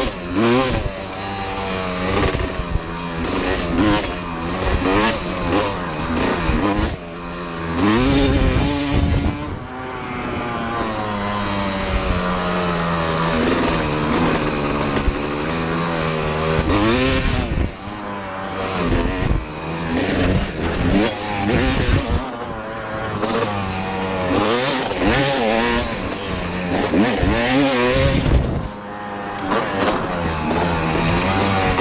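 1992 Kawasaki KX250's two-stroke single-cylinder engine under way, revving up and falling back again and again as the throttle is opened and closed on the trail.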